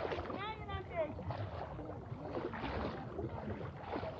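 Legs wading through floodwater, the water sloshing and splashing unevenly. A voice calls out briefly in the first second.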